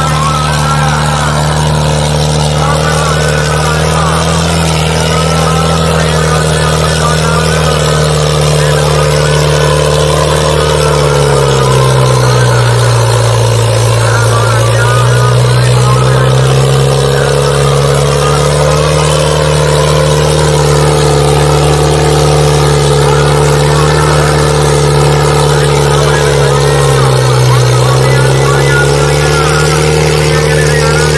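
John Deere tractor's diesel engine running hard at high revs while dragging a disc harrow through soil. Its pitch sags for a few seconds about eleven seconds in as the load pulls it down, recovers, and dips briefly again near the end.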